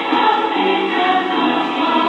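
A choir singing with music, in long held notes.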